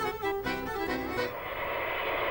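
Background violin music, a few held notes that fade out a little past halfway, leaving a steady hiss with a faint high whine.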